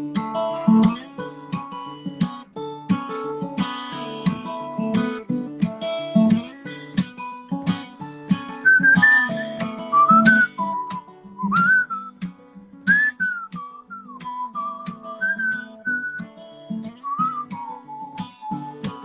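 Steel-string acoustic guitar fingerpicked in an instrumental passage. From about halfway through, a whistled melody bends and slides over the guitar.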